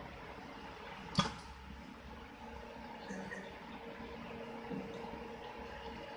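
Faint steady hum of a cable shield and braid processing machine running, with one sharp click about a second in.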